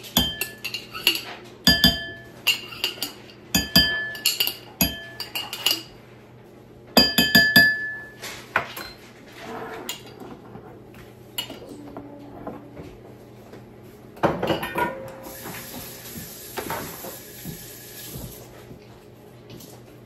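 A metal spoon clinks and scrapes against a ceramic bowl and glass jars as gravy is emptied out, sharp ringing clinks in quick succession for the first several seconds. Quieter knocks follow, then a steady hiss for a few seconds near the end.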